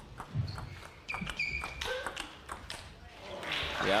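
Table tennis rally: the celluloid-type plastic ball clicks sharply off bats and table in a quick, irregular series, with a few short squeaks of shoes on the court floor. The point ends about three seconds in, and crowd applause rises near the end.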